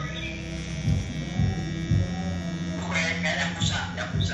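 Pen-style rotary tattoo machine humming steadily, with background music and a voice coming in about three seconds in.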